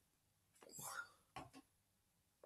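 A man's faint, breathy whispered strain, imitating a grimacing face, about half a second long, followed by a second, shorter breathy sound.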